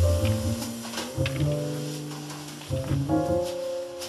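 Jazz piano trio playing live: grand piano with double bass and drum kit, with a few light cymbal strokes.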